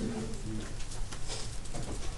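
A quiet, low murmur of students' voices answering the teacher's question, trailing off in the first half second.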